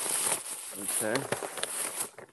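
Tissue paper rustling and crinkling steadily as it is pulled out of a paper gift bag.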